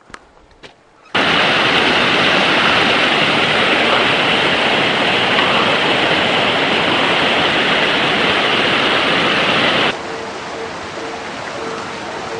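Rushing water of a small mountain stream running over rocks, a loud steady hiss that starts abruptly about a second in and drops to a quieter level near the end.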